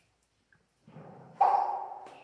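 Two ringing tones from something struck, the louder about a second and a half in; each starts sharply and dies away slowly, lengthened by the cave's echo.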